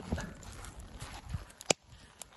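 Soft knocks and handling noise while a foil-wrapped potato is pulled from a charcoal fire stand, with one sharp click near the end.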